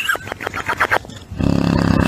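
A sleeping English bulldog snoring: a squeaky, fluttering wheeze through the nose, then about a second and a half in a loud, long, low rumbling snore.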